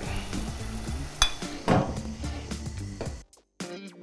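A steady hiss of liquid with a low hum, and a single metal clink about a second in as the lid goes back onto the stainless brew kettle. Near the end it cuts to background music with a beat.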